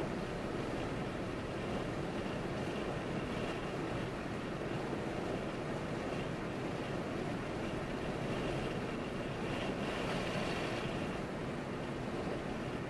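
Steady tyre and wind noise of a car driving along a paved road, with no breaks or sudden events.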